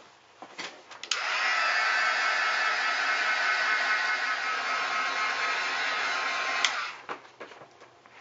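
A handheld craft heat gun is switched on about a second in. It blows with a steady hiss for about five and a half seconds, then switches off. It is heat-setting a freshly applied layer of wet rust effects paste.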